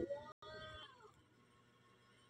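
A cat meowing: a short pitched call that falls in pitch and dies away within the first second.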